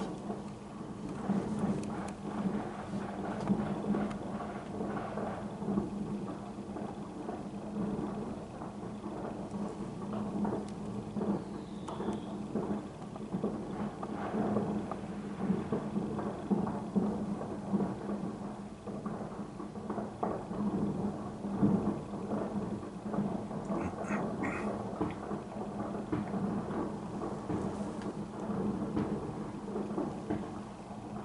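Distant New Year's Eve fireworks: a continuous rumble of many overlapping bangs and crackles, over a steady low hum.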